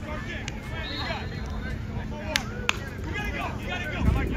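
Indistinct chatter of several people talking at once outdoors, over a steady low rumble.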